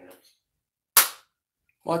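A single short, sharp snap about a second in, loud and quickly fading.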